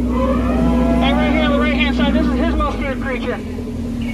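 A man's voice talking over a steady low drone of a tour boat's motor; the lowest part of the drone drops away about two and a half seconds in.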